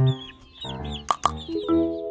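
Background music with held notes and a beat, over the repeated high chirps of young lavender Ameraucana chicks.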